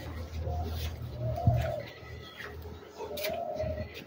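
A dove cooing: three short, soft coos spaced a second or two apart, over a steady low hum.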